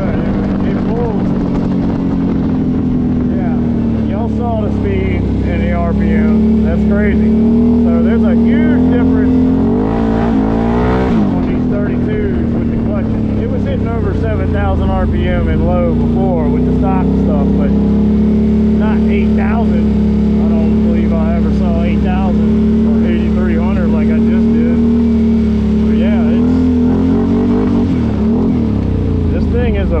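Can-Am Outlander 850 XMR's Rotax V-twin engine running at speed under a rider, fitted with a new CVTech clutch kit. The engine note holds steady at cruising revs, drops and picks back up about a third of the way in, and falls again near the end as the quad slows.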